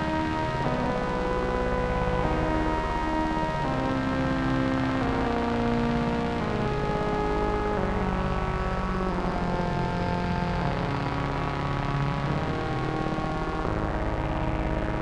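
Layered synthesizer music: held pad chords that shift every second or so over a dense, steady low bass.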